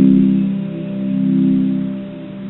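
Les Paul electric guitar letting a chord ring out near the end of the song, several notes sustaining together while the volume slowly ebbs and swells.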